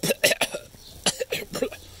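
A person coughing, a few short bursts in two groups.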